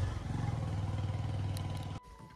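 A motor vehicle's engine running with a steady low drone, gradually getting quieter.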